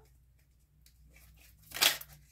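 A deck of oracle cards handled and shuffled by hand: faint rustles and ticks, then one brief, louder papery rush of cards sliding over each other near the end.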